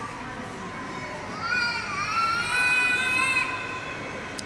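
A young child's long, high-pitched squeal, wavering and held for about two seconds, starting over a second in, over low background murmur.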